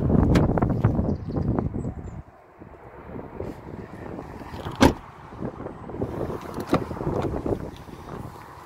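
Wind rumbling on the microphone for the first two seconds as a car door handle is pulled and the door opened, then quieter, with a single sharp door-latch click about five seconds in and a few lighter knocks near the end.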